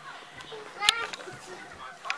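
A young child's faint voice and play sounds, short bits of vocalizing with no clear words, with a sharp click about a second in.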